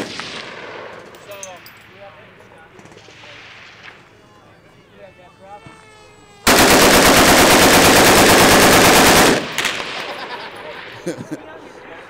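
One long burst of full-automatic gunfire from a shoulder-fired automatic weapon, about three seconds of rapid shots starting about six and a half seconds in, followed by a short fading echo.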